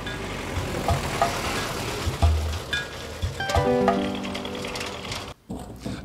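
Truck driving close past over a road speed bump, a noisy engine and tyre rumble with a low thump about two seconds in. Background music with sustained notes comes in over the second half.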